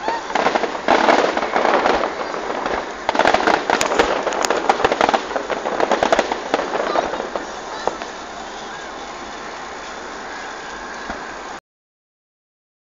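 Fireworks exploding overhead, a rapid crackling of many small pops that thins out about eight seconds in, leaving a steady background hum. The sound cuts off suddenly near the end.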